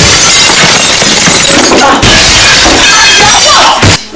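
A loud, dense crashing, shattering noise, with a brief break about two seconds in.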